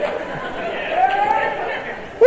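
Church congregation voices calling out and talking over one another in a large hall, responding to the sermon, heard on an old cassette recording.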